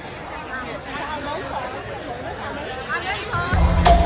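Crowd of people chattering. About three and a half seconds in, music starts with a loud, steady deep bass and a held note.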